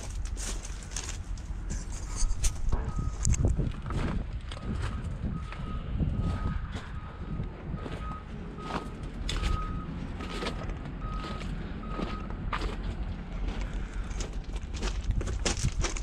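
Footsteps crunching on gravel. Through much of the middle, a vehicle's reversing alarm beeps steadily about twice a second, fainter than the steps.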